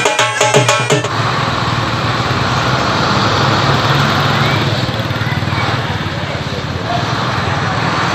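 Drum-led music for about a second, then a bus engine running steadily as the bus drives slowly forward, with road noise.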